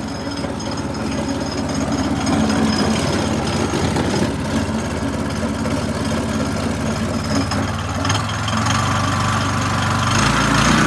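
Petrol engine of a Wacker Neuson BFS 1345B walk-behind floor saw, running steadily at idle; its sound grows heavier near the end.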